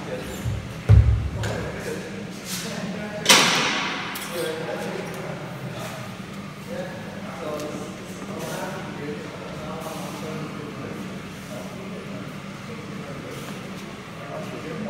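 Weight plates knocking against a heavily loaded bench-press barbell as it is loaded. There is a heavy low thud about a second in and a sharp clank with ringing a couple of seconds later, over murmured gym chatter.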